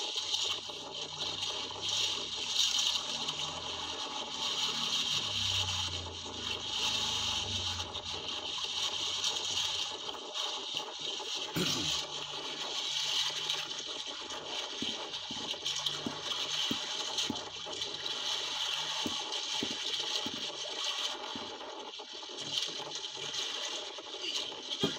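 Sea water rushing and splashing against the hull of an outrigger boat, a steady wash with one sharp knock about halfway through.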